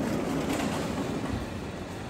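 Sliding glass door rolling along its track as it is pushed open, a low rumble that slowly fades.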